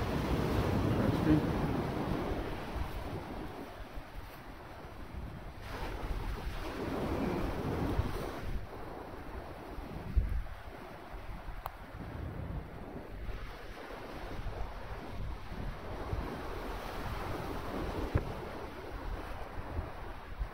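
Sea waves washing onto a shingle beach, swelling and fading every few seconds, with wind buffeting the microphone.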